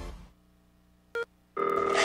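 The tail of a music jingle fades out, a brief electronic blip sounds about a second in, and then a mobile phone ringtone starts ringing, a steady chord of tones, just past halfway.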